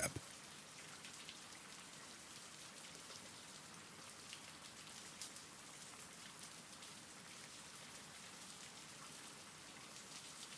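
Faint, steady rain: an even hiss with scattered small ticks of drops.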